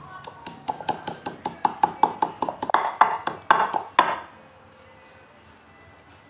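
Wooden pestle pounding leaves in a wooden mortar: quick, even strikes, about five a second, each with a short wooden knock, stopping about four seconds in.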